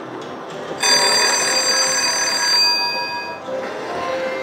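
Slot machine's electronic bell-like ringing, starting suddenly about a second in and fading out after about two and a half seconds, over a steady casino background.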